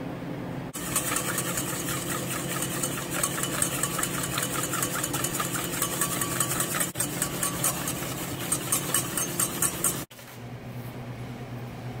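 Wire whisk beating in a stainless steel mixing bowl in rapid, even strokes, scraping against the metal as oil is whisked into the dressing to emulsify it. The whisking stops about ten seconds in, leaving a steady low hum.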